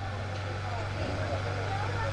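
A steady low hum with faint voices in the background.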